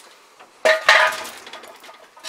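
A metallic clank with a short ringing rattle about half a second in, fading over about a second. It comes from an old pop machine's sheet-metal door and wire can rack being handled.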